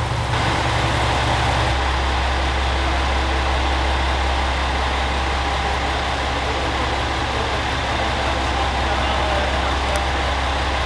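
Diesel engine of a JR Shikoku 2000 series express railcar idling steadily while the train stands at the platform. Its low hum shifts slightly lower about two seconds in.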